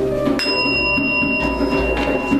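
Ceremonial music with a steady drum beat. About half a second in, a small bell is struck once and rings on with a clear, high, sustained tone.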